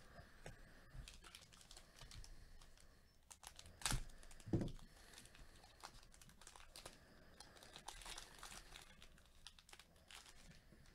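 Foil wrapper of a Panini Prizm football card pack crinkling and crackling faintly as gloved hands tear it open, with two louder thumps about four seconds in.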